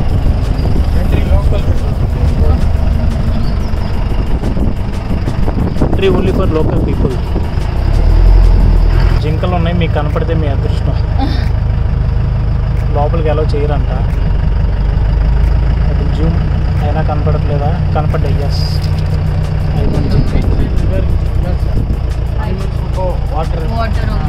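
A safari vehicle's engine running as it drives slowly, a heavy low rumble heard from inside its open-windowed cabin, swelling louder for a moment about eight seconds in.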